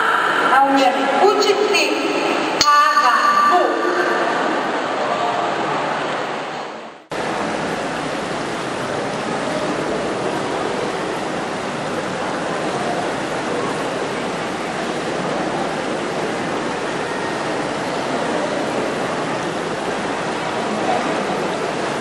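A voice for the first few seconds, fading out. After an abrupt cut about seven seconds in, a steady, even rushing noise like running water fills the rest.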